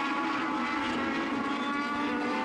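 A pack of INEX Legends cars racing, their Yamaha 1200 cc motorcycle engines running together at high revs as a steady drone without shifts in pitch.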